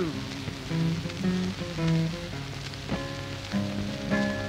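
Acoustic guitar playing a short blues fill of single picked notes and bass notes between sung lines, over the hiss and crackle of an old record's surface noise.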